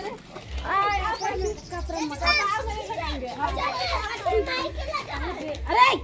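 Children and adults shouting and chattering excitedly over one another during play, with a low, regular thud about two or three times a second underneath.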